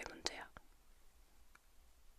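A woman's close-miked, whispery voice ends a Korean phrase in the first half second. Faint room hiss follows, with two small clicks.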